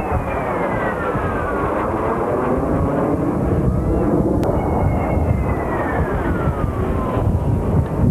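Jet aircraft flying past overhead over a steady roar. Its engine whine falls in pitch twice, once at the start and again from about halfway, as the jet passes.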